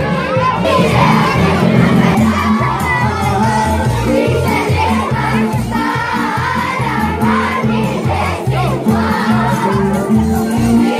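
A crowd of children shouting and singing along, loud and continuous, over dance music with a steady beat in the bass.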